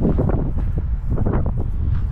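Wind buffeting the microphone: a loud, low rumble that dips briefly about a second in.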